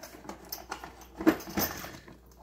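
Hands rummaging through small items while reaching for a part: a scatter of light clicks and rustles, the loudest about a second and a quarter in.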